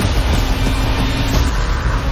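Loud, dense rumble of trailer sound design, heavy in the low end, with a faint low held tone through the middle.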